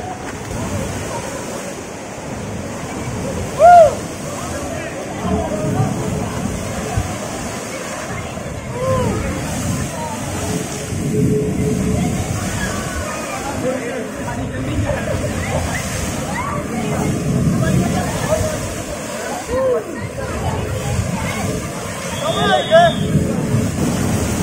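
Wave-pool water sloshing and splashing, with a surge about every six seconds as a wave is pushed out and breaks against the pool wall. Scattered shouts from people in the water, one loud shout about four seconds in.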